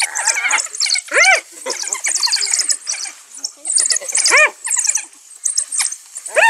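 African wild dogs and spotted hyenas calling during a fight: constant high-pitched twittering chatter, broken by loud, short squealing yelps that rise and fall in pitch, about a second in and again past four seconds.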